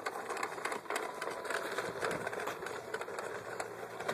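Plastic toy push lawn mower rattling as it rolls over wood-chip mulch, with a busy, steady run of small clicks.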